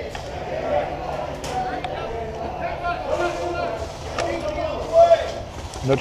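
Indistinct voices of people talking nearby, with a louder burst about five seconds in.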